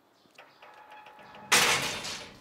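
Wrought-iron gate handled: a few light clicks and a faint creak, then a sudden loud rattling noise about one and a half seconds in that fades away over about a second.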